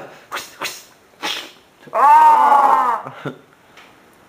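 A few short, sharp breathy sounds, then about two seconds in a loud drawn-out wailing cry from a person's voice, lasting about a second and rising then falling in pitch.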